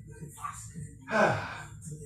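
A person breathing hard from exertion during a dumbbell exercise, with one loud breathy gasp a little over a second in that drops in pitch.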